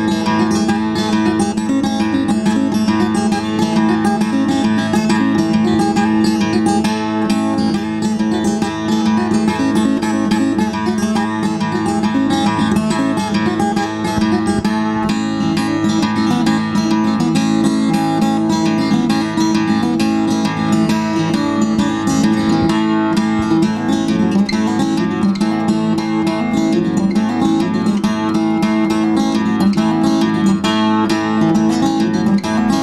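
Sardinian guitar (sa ghitarra), a large acoustic guitar, strummed steadily in an unbroken rhythmic chord pattern, playing the accompaniment to a traditional Sardinian dance (ballo).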